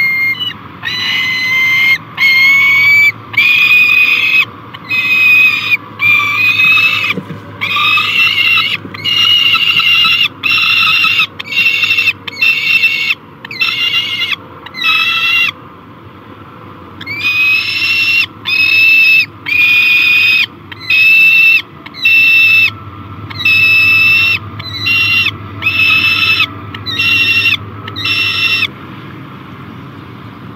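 Juvenile peregrine falcon giving loud, repeated begging calls, one to two drawn-out, slightly rising wails a second. There is a short break about halfway, and the calling stops shortly before the end.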